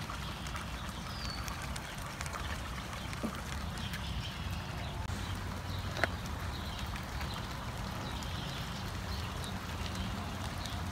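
Outdoor ambience: a steady rushing background with a low rumble, faint short bird chirps, and a couple of sharp clicks about three and six seconds in.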